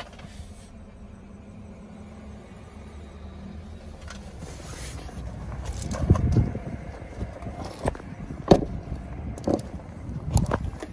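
Handling noise from a handheld phone as someone moves through a car's rear seat and climbs out: a low steady rumble, then louder rubbing and bumping from about six seconds in, with a few sharp knocks and, near the end, steps on gravel.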